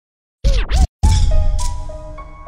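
Opening of a chopped-and-screwed hip hop track: two quick record scratches about half a second in, then, after a short gap, a loud bass-heavy entry about a second in with a slow line of held synth notes that gradually fades.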